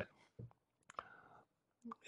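Near silence, broken by a few faint short clicks about a second in and a soft low sound just before speech resumes.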